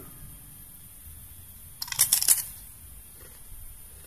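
A bite into a crispy fried cod-skin cracker (kerupuk kulit ikan): a quick cluster of crunches about two seconds in, lasting about half a second.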